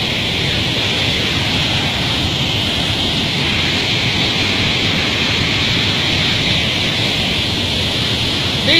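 Waterfall's rushing water, a loud steady noise.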